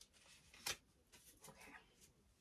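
Near silence, broken by one short click of tarot cards being handled about two-thirds of a second in, and a few fainter card ticks a little later.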